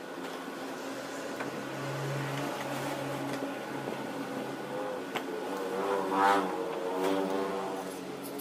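A motor vehicle's engine running nearby, swelling and sweeping in pitch as it passes about six seconds in, with a few light metal clicks of hand tools.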